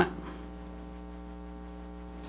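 Steady electrical mains hum, a low buzz with a ladder of even overtones, picked up by the meeting-room sound system between speakers.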